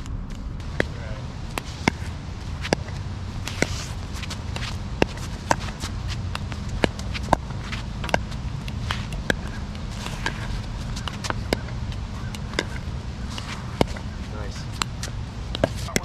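Pickleball paddles striking a plastic pickleball in a fast back-and-forth volley drill: sharp pops, about one to two a second and unevenly spaced, with the ball's bounces on the hard court among them, over a steady low background noise.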